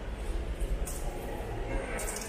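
Steady low rumble with a soft, hissy scuff about once a second, from a handheld camera's microphone carried at walking pace: handling or wind rumble and footsteps on a tiled floor.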